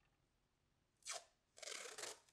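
Faint scratchy brush strokes of gouache on sketchpad paper: a short stroke about a second in, then a longer one near the end.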